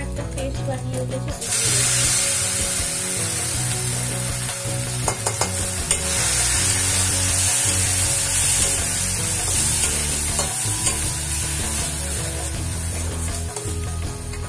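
Chopped onions and ginger paste frying in hot oil in a metal kadai while a metal spatula stirs them: a steady sizzle that swells loud about a second and a half in, with a few clicks and scrapes of the spatula on the pan around the middle.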